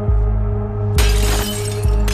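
A glass pane smashed about a second in, a sudden shatter lasting under a second, over music with a deep beat pulsing roughly once a second.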